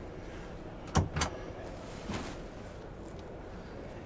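Motorhome overhead locker door being lifted open: two sharp clicks about a second in, a quarter second apart, then a fainter shuffle, over a steady background murmur.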